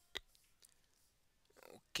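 A single sharp click about a fifth of a second in, then near silence with faint room tone, and a faint soft sound just before the speech resumes.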